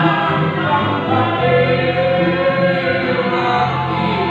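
Keroncong band playing live, with sung vocals over acoustic guitar, violin and cello, the voices holding long notes through the middle.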